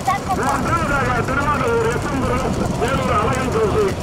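A man's voice calling fast, excited race commentary without pause, over the steady noise of a running vehicle engine.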